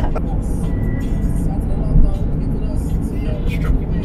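Inside a moving car's cabin: steady low rumble of the engine and tyres while driving.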